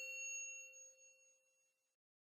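The ringing tail of a single bell-like ding sound effect, the chime of a subscribe-animation bell button, dying away to nothing in the first second or so.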